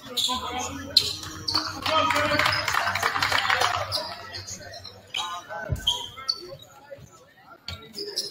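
Gymnasium sounds during a break in a basketball game: scattered voices and basketballs bouncing on the hardwood, with a loud burst of team shouting and clapping about two seconds in as a huddle breaks.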